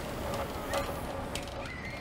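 Pedal-powered tiny-home trike rolling along the street: low rolling noise with a few faint clicks and a short squeak near the end.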